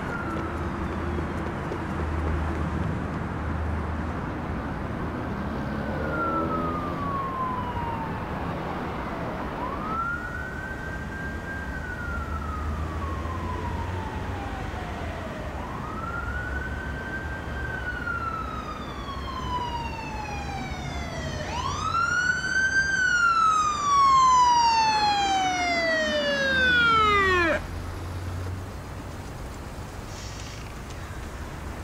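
Police car siren wailing, each cycle rising quickly and then falling slowly, repeating about every five and a half seconds. It grows louder as it approaches and cuts off suddenly near the end. A low rumble of a car engine runs beneath it.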